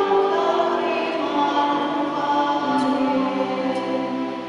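A choir singing with long held notes that move from one pitch to the next.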